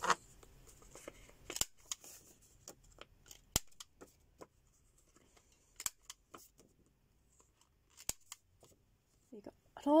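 Handheld corner rounder punch snapping through index card stock: about four sharp clicks, roughly two seconds apart, one for each corner, with light paper rustling between them as the card is turned.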